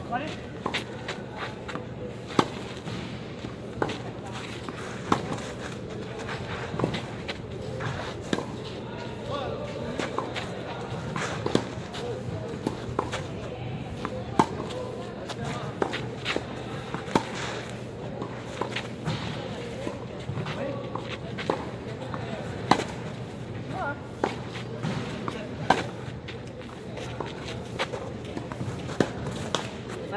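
Tennis balls struck back and forth with rackets in a baseline rally, a sharp pock about every one to two seconds, alternating between near and far hits. Indistinct voices run underneath.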